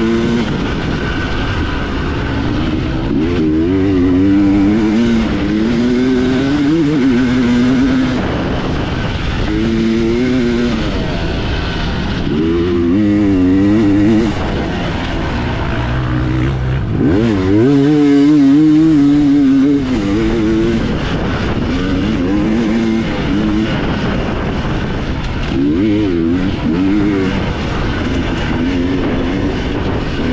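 Two-stroke dirt bike engine heard on board while racing, its pitch climbing and dropping over and over as the rider works the throttle and shifts through the gears.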